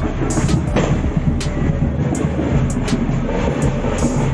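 Loud, continuous street din with a heavy low rumble and scattered irregular knocks.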